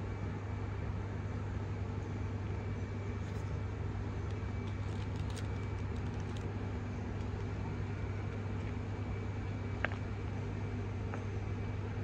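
Steady low background hum with a few faint clicks, one of them near the end, heard while a mouthful of burger is chewed.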